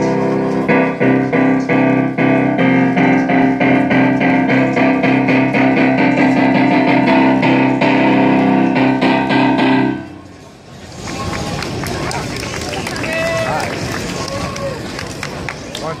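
Electric keyboard playing sustained chords with repeated note attacks, cutting off abruptly about ten seconds in. After that, outdoor crowd chatter with scattered voices.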